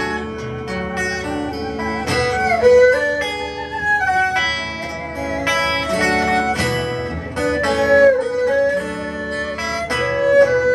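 Erhu and acoustic guitar duet playing an old Shanghai pop song: the erhu carries a bowed melody that slides between notes, over picked and strummed acoustic guitar chords.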